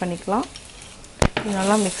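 A spatula knocks once, sharply, against a cast-iron pan about a second in, over faint stirring of boiled field beans with grated coconut; a woman's voice speaks briefly either side of the knock.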